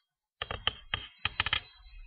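Typing on a computer keyboard: a quick, uneven run of about nine short key taps in two bursts.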